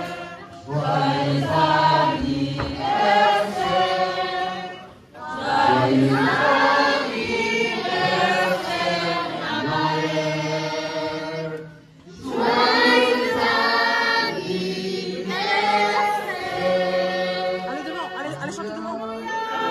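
A group of people singing together in chorus, in long held phrases broken by brief pauses about five and twelve seconds in.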